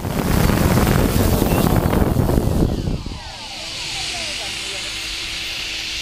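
Quadcopter drone's rotors heard from the aircraft itself, loud while it hovers low over the ground. About three seconds in the motors throttle down with a falling whine as it settles to land, then run on steadily at a lower level.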